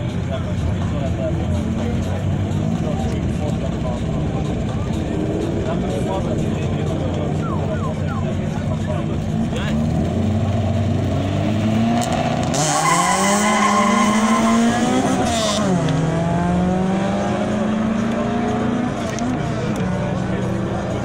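A turbocharged Daewoo Tico and a Peugeot 106 drag racing. Both engines are revved while staged at the line. About two-thirds of the way in they launch with a few seconds of hissing tyre noise. The engine pitch climbs as they pull away, drops at a gear change and climbs again.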